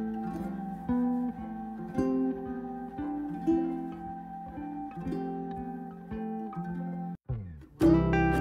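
Background music of plucked acoustic guitar, with a brief break about seven seconds in before it resumes louder.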